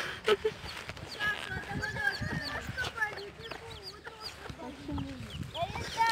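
Chicken clucking, with voices in the background and footsteps on a dirt path.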